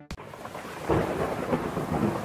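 Heavy rain pouring, with a rumble of thunder swelling about a second in.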